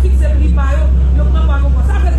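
Several voices talking indistinctly over a loud, steady low rumble.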